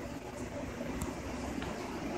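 Steady background hiss and hum of a small room, with a faint tick about a second in.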